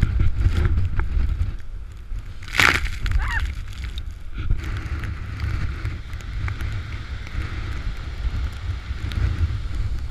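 Storm wind buffeting the microphone over the steady noise of heavy surf breaking against a seawall. A sudden loud crash comes about two and a half seconds in.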